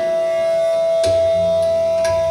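Bansuri flute holding one long steady note. A single drum stroke about halfway through is followed by a low, resonant drum tone.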